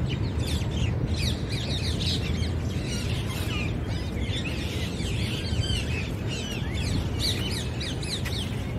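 Many birds chirping and calling at once, a dense chorus of short high chirps, over a steady low rumble.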